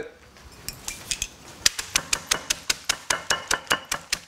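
Tortilla chips in a zip-top plastic bag being pounded on a wooden cutting board, crushing them to crumbs: a few scattered knocks, then from about a second and a half in a rapid, even run of sharp knocks at about five a second.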